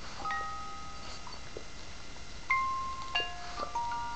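Musical doll playing its high-pitched lullaby: chiming notes that ring on briefly, one cluster just after the start, then a quicker run of single notes in the second half.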